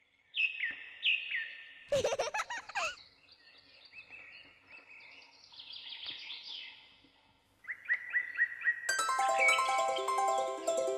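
Birdsong on a cartoon soundtrack: repeated short falling chirps, a louder burst of sweeping warbles about two seconds in, softer twittering, then more quick chirps. Music with plucked harp-like notes comes in about a second before the end.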